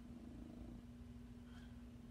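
Domestic cat purring, faint and steady.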